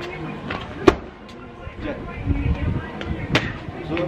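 Muay Thai strikes landing on a trainer's held pads: two sharp smacks, the louder about a second in and another a little past three seconds.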